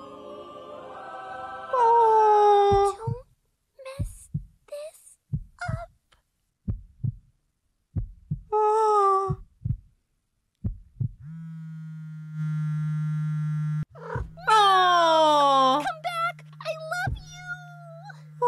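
A cartoon voice squealing a long, high 'eeee' that slides down in pitch, then scattered short soft sounds. About eleven seconds in a steady low buzz starts, a phone going off, and carries on under another falling high cry.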